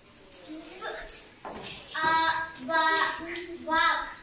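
A child's voice reading English words aloud one at a time, a short word about two seconds in, another about three seconds in and a third near the end, with pauses between.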